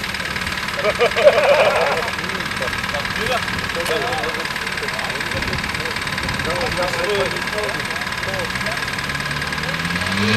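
Land Rover 4x4 engine idling steadily under background chatter from people around it; near the end the engine begins to rev, rising in pitch.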